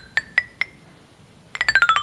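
A set of metal tube chimes of graded lengths struck one by one with a mallet, each giving a clear ringing tone. The first four notes climb in pitch, and about a second and a half in a fast run of strikes sweeps down the scale. Each pipe's length sets its pitch.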